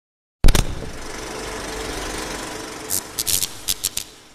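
Film-projector sound effect: a sharp hit about half a second in, then a steady mechanical rattling whir, with a handful of sharp clicks near the end before it fades.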